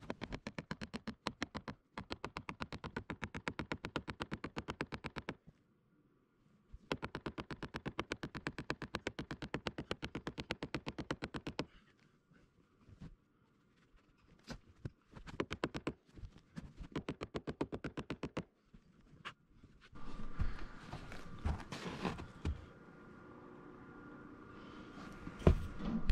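A mallet driving a dry cottonwood wedge into a timber-frame joint, tightening it. Rapid, evenly spaced strikes, several a second, come in two long runs with a short pause between them, followed by scattered single taps. Near the end there is rustling and handling noise.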